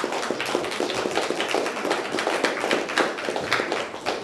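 Audience applauding: many hands clapping densely and steadily.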